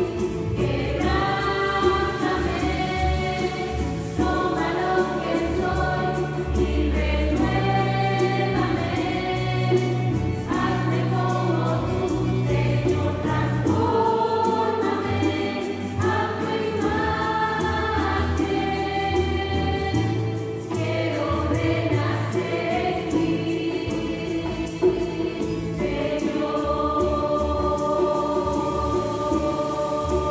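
Mixed choir of men and women singing a slow Spanish-language worship song over a band's bass line. Near the end the voices settle on a long held chord.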